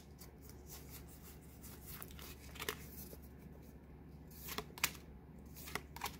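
Pokémon trading cards being flipped through by hand: soft sliding of card against card with a few faint sharper clicks, a little over halfway through and near the end.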